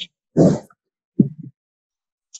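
Two short, garbled fragments of a voice coming through a video call, each cut off into dead silence: the call's audio breaking up.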